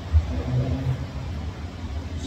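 A man's voice preaching through a church sound system, boomy, with a heavy low rumble under it.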